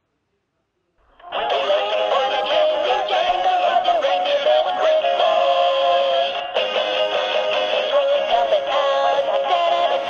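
Animated plush Christmas elf toy playing its recorded Christmas song through its built-in speaker: a jingly tune with a synthetic-sounding singing voice. It starts suddenly about a second in after a short silence.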